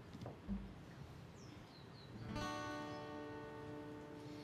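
A chord strummed once on an acoustic guitar a little over two seconds in and left ringing, opening the song. Before it there is a soft low thump about half a second in.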